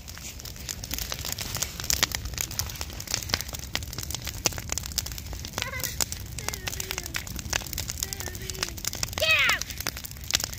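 Wood bonfire crackling, with a dense run of sharp pops.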